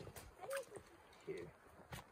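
A man's voice speaking a word or two quietly, with a few sharp faint clicks in between.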